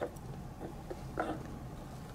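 Quiet handling of plastic toy parts as a small water-filled plastic snow-globe dome is pressed hard onto its base, with a soft click right at the start and a brief soft sound a little after a second in.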